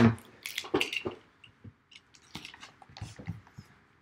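Scattered soft clicks and rustles of a cardboard trading-card box being handled and opened on a tabletop, fading out toward the end.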